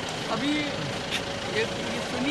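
Car engine idling, heard from inside the cabin as a steady background hum, with a few brief spoken fragments over it.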